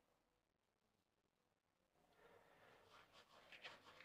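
Near silence, with very faint rustling in the second half as hands crush ajwain seeds between the palms over a bowl of flour.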